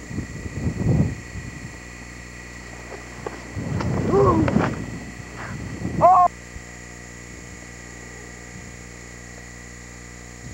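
Shouted calls with no clear words, several around four to five seconds in and a louder, higher one at about six seconds that cuts off suddenly. Before them, about a second in, there is a rumble of wind or handling on the camcorder's microphone, and a faint steady whine runs underneath.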